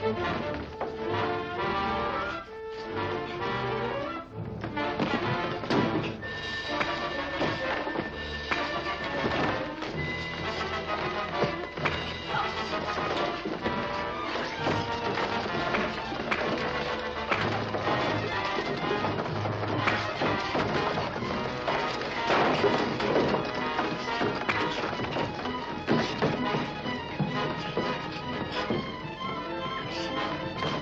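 Dramatic orchestral action music plays, with thuds, knocks and crashes from a fistfight mixed in throughout.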